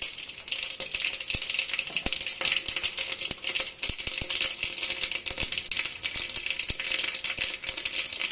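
Mustard seeds spluttering in hot oil in an aluminium pot: a dense, fast crackle of small pops. This is the tempering stage, when the oil is hot enough to make the seeds pop.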